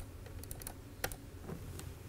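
Laptop keyboard keys clicked a few times at an irregular pace, quietly, over a steady low room hum, as slides are paged through.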